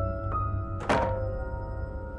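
A wooden front door being pushed shut, landing with one thud about a second in, over soft sustained background music.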